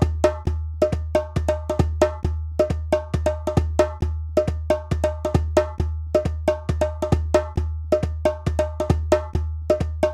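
Percussion music: quick, even strikes of a hand drum, about four a second, each with a short pitched ring, over a steady low hum.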